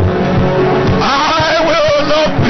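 Music with a voice holding a long, wavering note in the second half, over steady instrumental backing.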